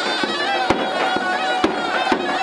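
Live traditional dance music: a large double-headed bass drum (dawola) struck in a steady beat about twice a second under a piercing, reedy wind-instrument melody.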